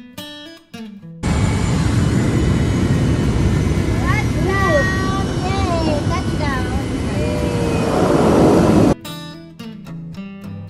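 Loud, steady engine and rushing-air noise inside a floatplane's cabin as it comes down onto the water, with a few voices calling out, rising and falling in pitch, in the middle. The noise swells near the end and cuts off suddenly into acoustic guitar music, which is also heard briefly at the start.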